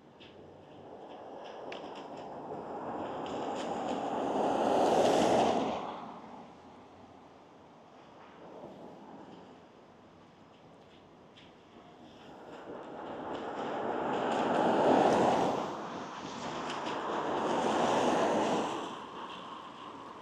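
Road traffic: vehicles passing one after another, each a rushing swell that builds over a few seconds and fades, the loudest about five and fifteen seconds in, a third just after.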